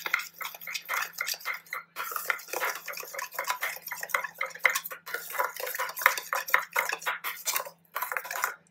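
Metal spoon stirring yeast, sugar and lukewarm water in a small stainless steel bowl, scraping and clinking against the sides in quick strokes, several a second.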